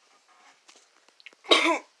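A person coughing once, a short rough cough about one and a half seconds in, after a few faint small clicks.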